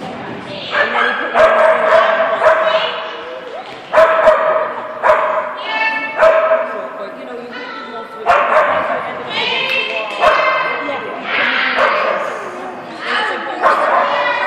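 A dog barking and yipping again and again, in quick runs of sharp, high barks.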